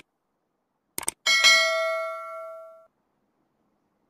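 Subscribe-button animation sound effect: two quick mouse clicks about a second in, then a single bell ding that rings out and fades over about a second and a half.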